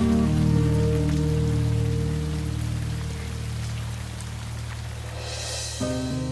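Trailer score of soft, sustained held chords over a steady rain-like hiss. The hiss swells briefly near the end as the chord changes.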